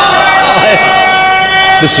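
A steady, high tone with overtones held for nearly two seconds through the public-address loudspeakers, over a man's voice; it stops near the end as speech resumes.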